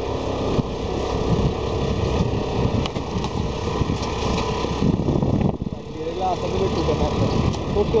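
Motorised two-wheeler running along a bumpy dirt track, engine hum under a rough rumble of wind and road noise on the microphone, with a brief dip about five and a half seconds in.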